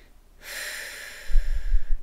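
A person's long, noisy breath in through the nose, starting about half a second in and lasting about a second and a half, with a few low thumps near the end.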